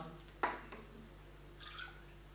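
Technical spirit (denatured alcohol) poured from a plastic bottle into a small glass: a short tap about half a second in, then a faint trickle of liquid near the end.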